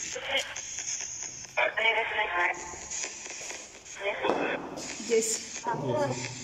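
Indistinct human voices in short, broken fragments, with stretches of hiss between them.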